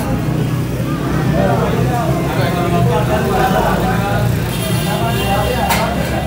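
A steady low motor-like rumble under faint background voices, with a sharp knock just before the end.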